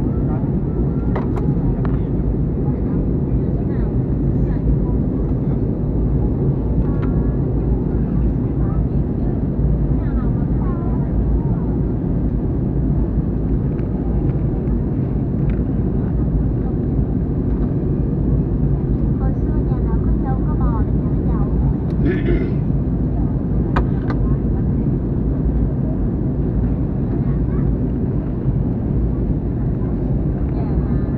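Steady low rumble of jet airliner cabin noise, engines and rushing air, heard from a window seat as the plane descends.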